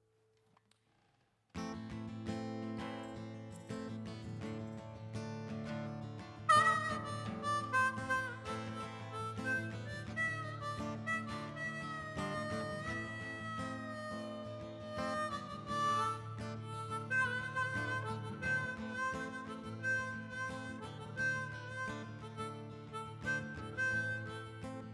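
Acoustic guitar strumming starts about a second and a half in, and a harmonica comes in over it with a bending melody line about five seconds later: the instrumental intro to a song.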